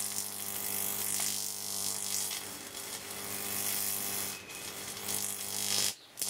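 Neon sign transformer buzzing with a steady mains hum while high voltage arcs through a mains-tester safety screwdriver, adding a constant hissing sizzle as its tip burns. The sound cuts out briefly near the end.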